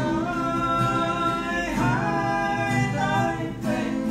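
A man singing a Vietnamese pop ballad in long held notes, with a downward slide in pitch a little before halfway, accompanied by acoustic guitar.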